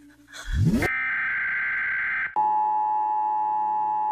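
Glitch transition sound effect: a quick rising sweep, then a buzzy high tone for about a second and a half. About two and a half seconds in it cuts to the Emergency Alert System attention signal, a steady two-tone beep that opens an emergency broadcast.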